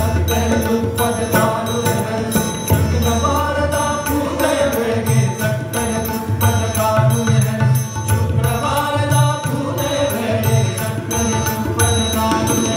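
Live Indian devotional music: a male vocalist singing a long, melismatic line, accompanied by tabla strokes, harmonium and a steady tanpura drone.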